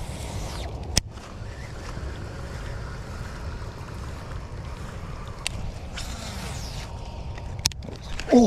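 Wind rumbling on the microphone, steady throughout, with one sharp click about a second in and a couple of fainter ticks later on.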